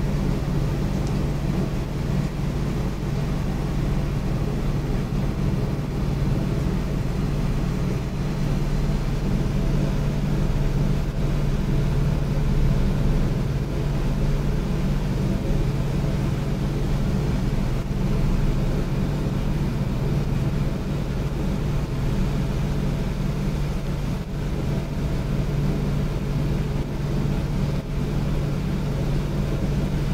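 A steady low hum over an even background rumble, with no distinct strokes or knocks.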